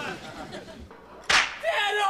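A single sharp smack, like a slap or whip crack, about one and a half seconds in. A short vocal cry follows it near the end.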